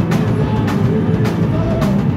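Live rock band playing: drum kit, electric guitar and bass guitar together in a lo-fi recording, with a drum or cymbal hit cutting through about every half second.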